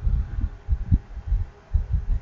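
A few soft, irregular low thumps and rumbles, with no speech.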